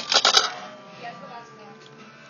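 A quick burst of sharp clicks and rattles in the first half second, then faint background music.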